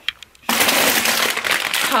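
A few light clicks, then about half a second in a loud, steady rustling and crinkling of a plastic bag of frozen riced cauliflower stir-fry as it is pulled out of the fridge.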